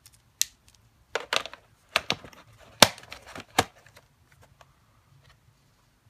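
Winsor & Newton Pigment Markers being handled: plastic caps and barrels clicking and knocking against each other and the plastic tray. About half a dozen sharp clicks come in the first four seconds, the loudest near three seconds in, then only a few faint ticks.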